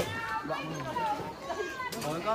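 Children's voices talking and calling out over one another, high-pitched and overlapping, with a short sharp click near the end.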